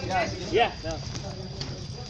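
People talking, with a voice saying “ya” about half a second in, over a steady low rumble; a few light clicks and knocks follow in the second half.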